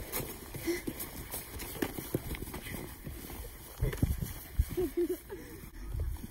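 Footsteps crunching and thudding unevenly through deep snow. Near the end, a child's voice makes short sounds.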